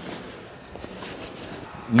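Fabric rustling and handling noise as the tent's carry bag and packed stretcher are handled, a soft, uneven scuffing with no distinct knocks.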